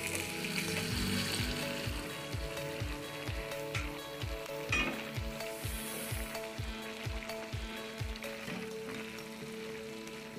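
Pan juices and chicken broth sizzling in a hot frying pan, a steady fine hiss, with soft background music carrying a low beat about twice a second.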